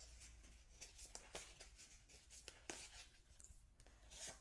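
Faint, scattered clicks and light rustling of oracle cards being handled and shuffled.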